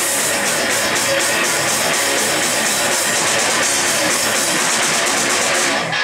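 Live rock band playing: electric guitars, bass guitar and drum kit, with steady cymbal strokes over the guitars.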